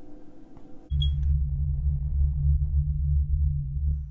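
Electronic title sting: a brief high blip about a second in, then a loud, steady low synthesized hum that cuts off abruptly near the end.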